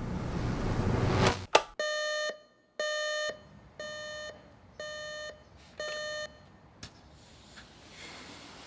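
Philips Magnavox clock radio alarm beeping five times, one half-second beep a second, the first two louder. Before it, a rising whoosh ends in a sharp hit. A single click follows the beeps.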